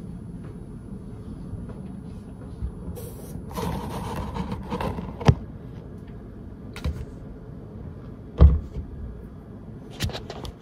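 Tableware and a bottle being handled on a wooden table close to the microphone: a rustle, a sharp knock about five seconds in and a heavy thump about eight and a half seconds in. Under them a low steady hum stops about three seconds in.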